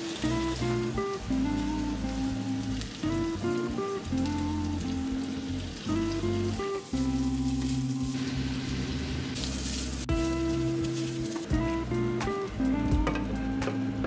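Background music over the sizzle of canned corned beef and onions frying in a pan. The sizzle grows brighter for a moment about nine seconds in.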